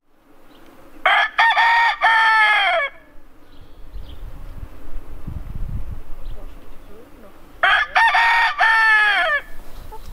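Black Appenzeller Barthuhn rooster crowing twice, each crow about two seconds long and dropping in pitch at its end.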